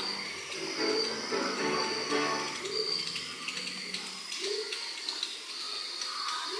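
Soft background music with a repeating melody.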